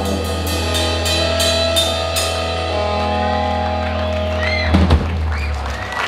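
Live country-rock band ringing out a held final chord, with sustained bass and guitars under a run of drum-kit cymbal crashes. About five seconds in, two loud hits land and the held bass note cuts off.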